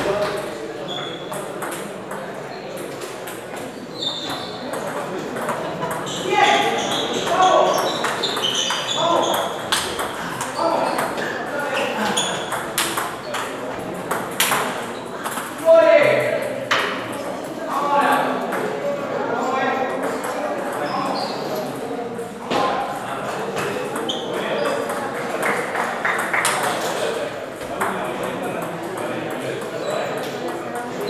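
Table tennis balls clicking irregularly off paddles and tables from several games at once, under the chatter of voices around a busy hall.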